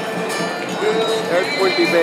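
Street crowd at a parade: people talking close by, with music playing among the voices.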